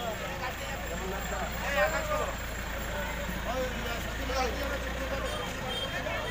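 Several people talking at once at a distance, over the low steady rumble of an idling car engine that stops about five seconds in.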